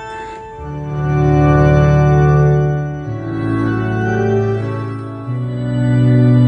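Yamaha Electone EL-900m electronic organ set to a church-organ registration, playing slow sustained chords. A deep bass note comes in under the chords about half a second in and changes twice.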